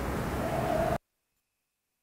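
Steady background hiss, the room tone of an interview recording, cutting off abruptly about a second in to dead silence.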